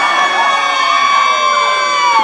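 Children in a crowd holding a long, high-pitched scream at one steady pitch, with other crowd voices under it.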